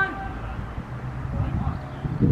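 Players' shouts on an outdoor football pitch: a long held call that breaks off just after the start, then faint distant voices over a low, uneven outdoor rumble.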